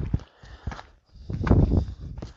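A few footsteps on a dirt and gravel track, with a louder rough rustle a little past the middle.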